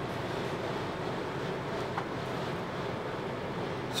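Steady road noise of a car cruising at highway speed, heard from inside the cabin: tyre and wind noise with a low engine hum.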